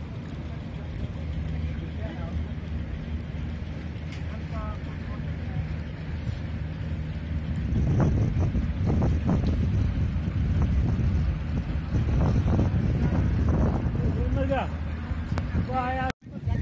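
Wind buffeting the microphone, growing stronger about halfway through, over a steady low hum, with faint voices in the distance.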